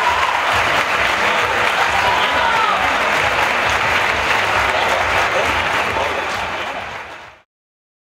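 Audience applauding, with voices calling out over the clapping. It fades and cuts off abruptly to silence shortly before the end.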